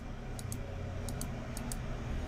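Computer mouse clicking: a few short, sharp clicks in quick pairs of press and release, over a low steady hum.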